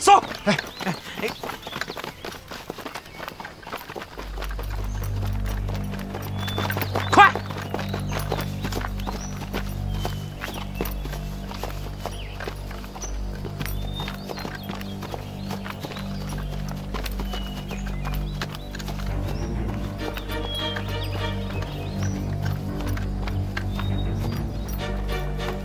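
Quick patter of many footsteps through undergrowth, giving way about four seconds in to a low, steady drone of tense film score that holds to the end. One sharp loud sound stands out about seven seconds in.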